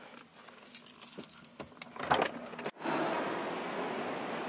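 Irregular clicks and light rattles of things being handled inside a car, then a sudden cut, about two thirds of the way in, to a steady background hiss.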